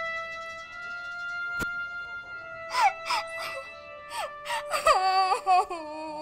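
A woman crying, with falling wails about three seconds in and again, louder and wavering, near the end, over background music with long held notes.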